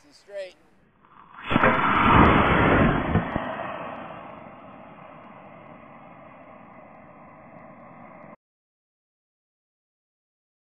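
Model rocket motor firing at launch: a sudden loud rushing roar starts about a second in, holds for about two seconds, then fades into a steady hiss as the rocket climbs. A short voice comes just before, and the sound cuts out abruptly near the end.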